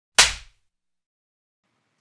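A single sharp hit sound effect, like a whip crack, marking a section title card; it strikes about a fifth of a second in and dies away within a third of a second.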